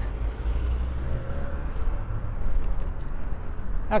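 Wind rumbling on the microphone over the hiss of bicycle tyres rolling on asphalt, heard from a handlebar-mounted camera while riding a road bike.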